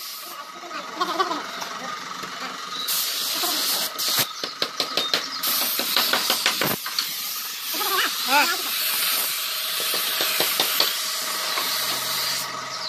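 Compressed-air spray gun hissing as it sprays paint: a short burst about three seconds in, then a long steady spray from about five and a half seconds on.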